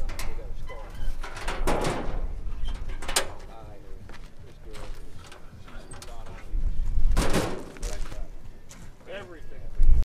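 Steel hood of a Willys CJ3A Jeep being lowered and shut with one sharp clank about three seconds in, followed by the hood latch being worked by hand. Voices talk faintly around it.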